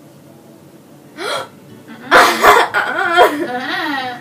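A short sharp gasp about a second in, then loud, high-pitched laughing squeals from young women in short wavering bursts.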